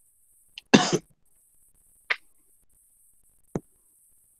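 A person coughing once, a single short loud cough about a second in. Two briefer sharp sounds follow, the last a quick click near the end.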